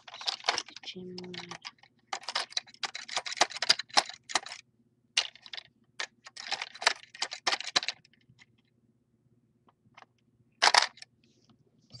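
Plastic Lego parts of a home-built gumball machine clicking and rattling as its mechanism is worked by hand, in quick dense runs for most of the first eight seconds, then one short burst of clatter near the end.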